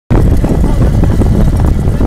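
Vehicle driving noise: a loud, steady low rumble from the car pacing alongside a trotting horse.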